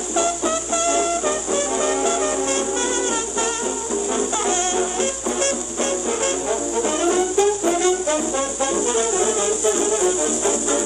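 Jazz band playing, heard from a 1940s home-cut acetate 78 rpm disc, with a steady high hiss over the music.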